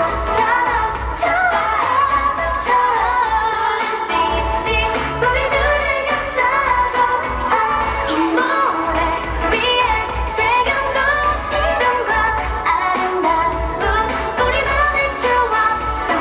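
K-pop dance track with female group vocals singing over it and a steady thumping bass beat, played loud over a stage sound system.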